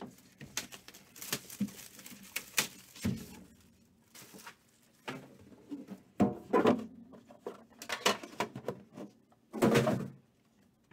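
A sealed trading-card hobby box being unwrapped and handled. Plastic wrap crinkles and tears, and the cardboard box gives short taps and scrapes, with louder bursts about six seconds in and near the end.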